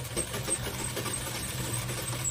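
Black domestic sewing machine running steadily, stitching a seam through layered thin saree fabric.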